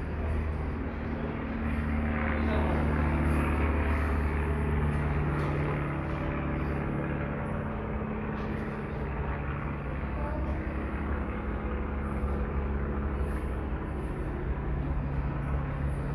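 A steady, low engine drone, louder for a few seconds from about two seconds in and then holding level.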